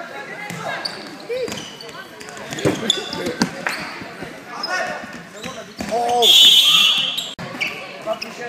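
A futsal ball thudding on a wooden sports-hall floor amid players' and spectators' shouts. About six seconds in, a loud, shrill blast of a referee's whistle lasts about a second.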